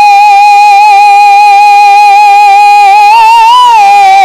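A man singing a rasiya folk song into a microphone, holding one long high note with a slight vibrato; a little past three seconds in the note swells and rises in pitch, then falls back.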